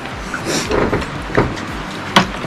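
Tableware being handled at a dinner table: a plastic serving bowl passed across and set down on a glass tabletop, giving a few short knocks and a scrape over a low steady hum.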